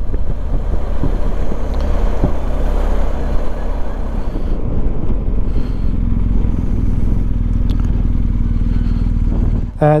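Motorcycle engine running steadily while riding along, with wind and road noise on the microphone.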